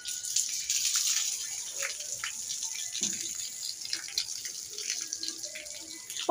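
Water pouring from a plastic bucket over a person's head and body and splashing onto a concrete floor, a steady rushing splash, loudest in the first second or two.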